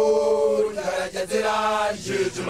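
Young Basotho male initiates (makoloane) chanting an initiation song: a long held note, a short break about a second in, then a second held note over a steady low voice.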